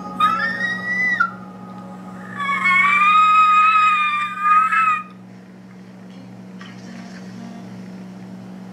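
A woman's high-pitched squeals of excitement: a short one that rises in pitch, then a longer, wavering one about two and a half seconds in, over faint background music.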